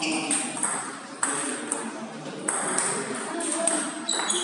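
Table tennis ball being served and rallied: a string of sharp clicks as the celluloid-type ball strikes the bats and bounces on the table.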